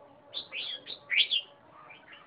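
A red-whiskered bulbul singing one short phrase of quick, pitch-sweeping notes lasting about a second, loudest near its end.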